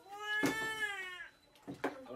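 A drawn-out, high-pitched meow-like cry lasting a bit over a second and dipping slightly in pitch at the end, followed by a short sharp sound near the end.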